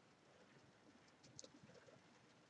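Near silence: room tone, with a faint bird call in the second half.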